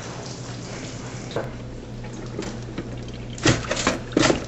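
Bacon sizzling in a frying pan over a steady low hum, then near the end a sharp metallic clatter as a pop-up toaster's lever is pushed down and springs straight back up, because the toaster is unplugged.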